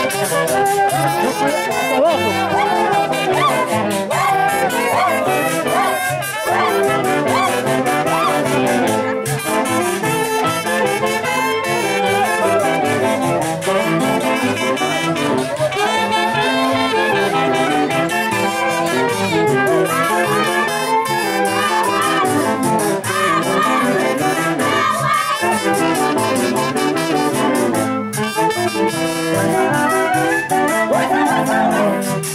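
Live band music led by wind instruments, brass and saxophone, playing a continuous dance tune at a steady level.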